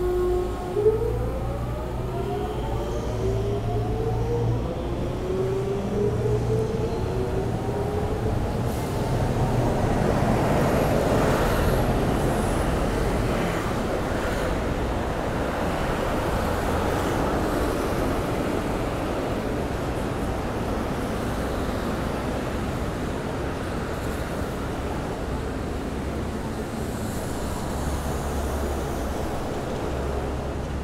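A streetcar's electric motors whining as it pulls away, several tones rising steadily in pitch for about eight seconds, with a single sharp knock just under a second in. Its rumble and the hiss of traffic on the wet road then swell and slowly fade.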